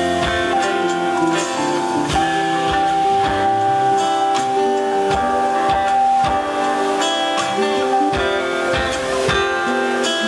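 Live band playing an instrumental guitar passage over a steady beat, with one note held for several seconds in the middle.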